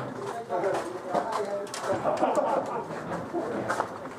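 Indistinct talking from more than one voice, with a few short sharp clicks.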